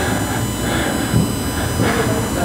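Steady background room noise: an even hiss with a low rumble under it and a few faint, steady high tones.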